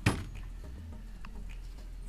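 A single sharp knock right at the start, as a cooking item is set down on the camp table, followed by a couple of faint clicks of handling.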